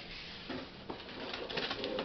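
Quiet rustling and scraping of a cardboard shipping box being opened by hand, with a few light clicks and crinkling in the second half.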